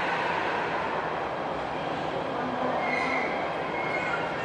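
Jakarta MRT electric train running into an elevated station platform with a steady rolling noise. A higher, squealing tone joins about three seconds in.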